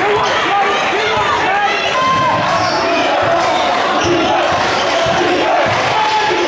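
Basketball game sounds in a crowded gym: a ball bouncing on the hardwood court amid the continuous voices and shouts of the crowd.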